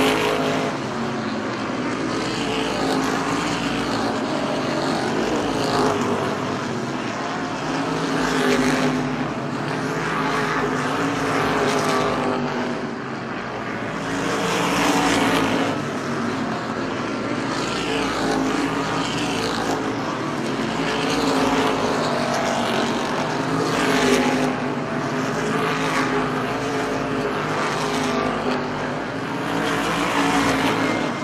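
Race cars' engines running at racing speed as a pack laps the track, the sound swelling and fading each time the cars pass, every several seconds.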